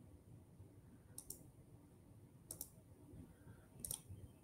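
Near silence with three faint, sharp clicks about a second and a quarter apart, from computer mouse or key presses while browser tabs are switched.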